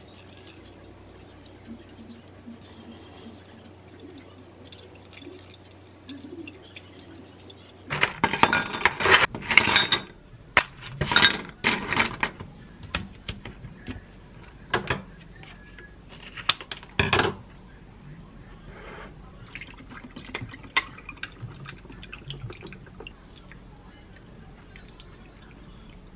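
Brewed coffee dripping faintly through a ceramic pour-over dripper into a glass carafe. About eight seconds in, ice cubes clatter into a glass mug, followed by several separate sharp clinks and knocks over the next ten seconds, then only faint clicks.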